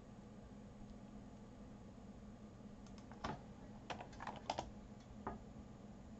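A few quiet computer-keyboard keystrokes, scattered irregularly over about two and a half seconds starting midway, over a faint steady low hum.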